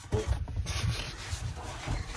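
Rubbing and low bumps of a person shifting and climbing over a car's leather seats and centre console armrest, with handling noise on the microphone.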